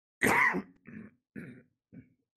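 A person coughing: one loud cough about a quarter second in, followed by three shorter, quieter coughs about half a second apart.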